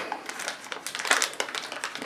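Crinkling of a LEGO Minifigures Series 12 plastic blind bag being handled and pulled open by hand: an irregular run of short crackly rustles.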